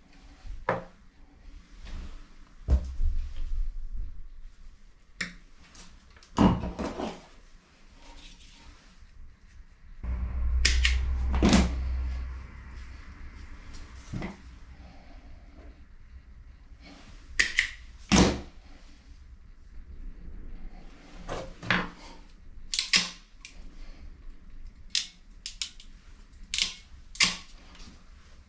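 Hand tools working thin bell wire: irregular sharp snips and clicks from wire cutters and a crimper pressing spade connectors onto the wire, with rustling of the cable between them. About ten seconds in there is a low rumbling thud lasting a couple of seconds.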